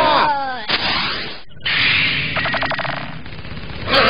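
Cartoon battle sound effects: a cry that falls in pitch and is cut off by a blast, then a noisy stretch of cannon fire with a fast rattle of shots about halfway through.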